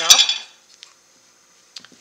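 A loud clatter of hard plastic in the first half second, then quiet and a few light taps near the end: a VersaMark ink pad and its lid being handled and the pad dabbed onto a stamp mounted on a clear acrylic block.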